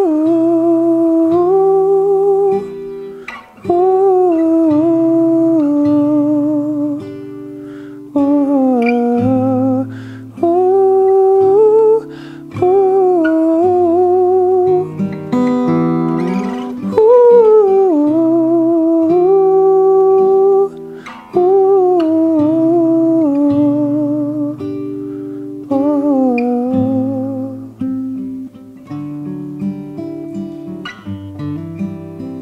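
A man hums a slow, wordless melody in long held notes with vibrato. Acoustic guitar accompanies him. The phrases last a few seconds each, with short breaths between them.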